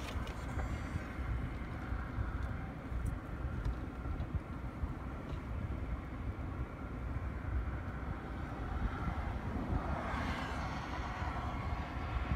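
Steady low roadside traffic noise with a few faint clicks.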